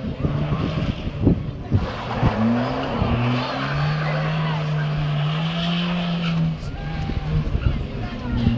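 A competition car's engine revving, its note rising and then held steady for a couple of seconds before dropping off, with tyres skidding as it manoeuvres on tarmac.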